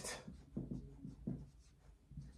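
Dry-erase marker writing on a whiteboard: a series of short, faint strokes that die away near the end.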